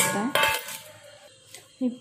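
Stainless steel spoon and pot clinking: two sharp metallic clinks close together, the second ringing briefly.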